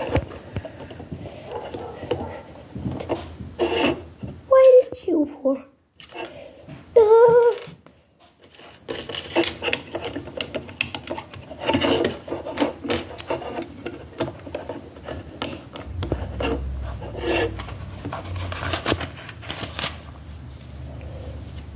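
Small plastic LEGO pieces clicking and rattling as they are handled and pressed together, in a run of quick clicks over the second half. Before that come two brief, loud vocal sounds.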